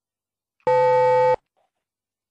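A single electronic beep: a steady, buzzy tone of fixed pitch lasting under a second, starting and cutting off abruptly about two-thirds of a second in.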